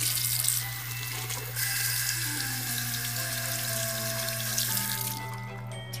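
Bathroom sink faucet running, its stream splashing over hands and a small plastic toy figure being rinsed. The water noise stops about five seconds in.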